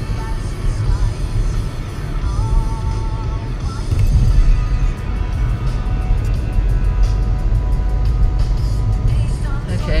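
Car cabin noise while driving: a steady low rumble from the road and engine, with music from the car radio playing low under it.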